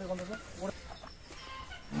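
Faint clucking of a domestic chicken, a few short calls, after a voice trails off at the start.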